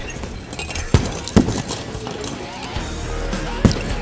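Gloved punches landing on a heavy punching bag: three sharp thuds, about a second in, again half a second later, and once more near the end, over background music.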